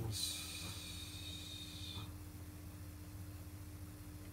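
Faint hiss from the Moog Rogue synthesizer that cuts off about two seconds in, over a steady low hum. The owner puts the hiss down to a noise-generator fader pot that needs cleaning or replacing.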